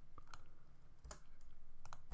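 A few quiet, isolated key clicks on a computer keyboard, spread out over two seconds as text is deleted and a new line is entered.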